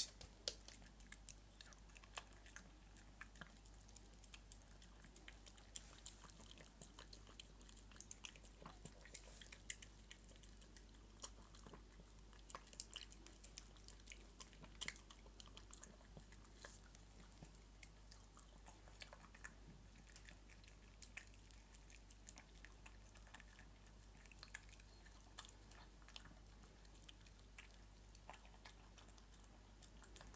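A small dog eating from a bowl: faint, irregular chewing and smacking clicks, a few of them sharper than the rest.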